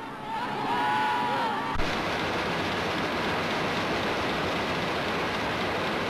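Newspaper printing press running: an even, steady rushing noise that starts abruptly about two seconds in, after a few faint gliding whistle-like tones.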